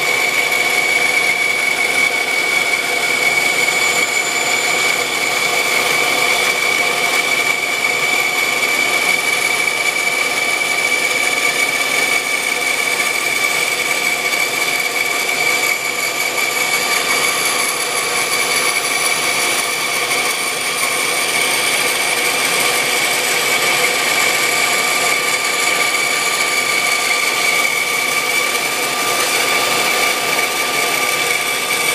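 Band saw running and resawing a wooden board lengthwise, the blade cutting through the wood with a steady high whine.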